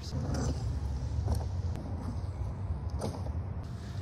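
Riding noise from a Begode Monster Pro electric unicycle with a 24-inch tyre rolling over a paved slab path: a low, steady rumble with a few faint clicks.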